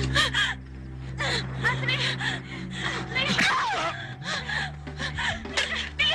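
A person gasping and letting out short, strained cries, over a low held drone of dramatic film score whose note shifts about four seconds in.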